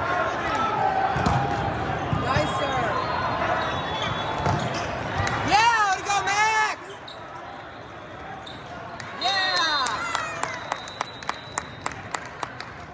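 Indoor volleyball rally in a large, reverberant hall: steady crowd and player chatter with ball hits, and bursts of sneaker squeaks on the court about halfway through and again near the end. The end has a run of quick claps.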